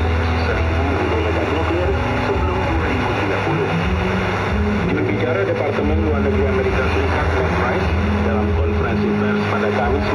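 Shortwave radio reception of a news broadcast under constant static and hiss. Sustained low notes step up and down in pitch through it, as in a short music interlude between news items.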